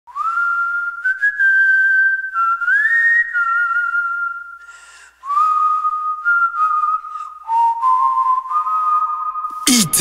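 Whistling of a slow tune: a string of long held notes, each sliding up into its pitch, stepping down overall, with a short break about five seconds in. Loud electronic music starts near the end.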